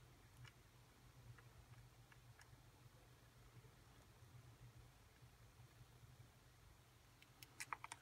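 Near silence: room tone with a steady low hum and a few faint, scattered clicks, more of them close together near the end.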